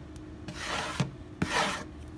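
Two rubbing strokes of a flat hand-held pad across a guitar's wooden back, one about half a second in and one about a second and a half in, with a light knock between them.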